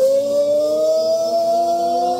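One long sung "oh" held by the band's singer and the crowd over the live band, its pitch creeping slightly upward.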